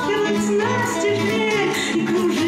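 A woman singing a slow, melodic song, accompanied by two acoustic guitars.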